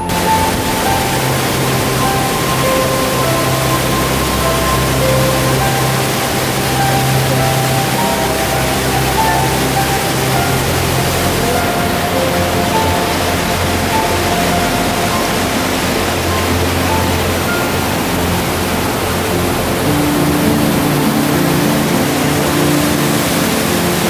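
Rushing water from a stream cascading over stepped stone masonry, a steady roar, under soft background music with a slow melody and bass.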